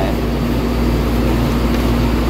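Steady machine hum with one constant low tone, unchanging throughout.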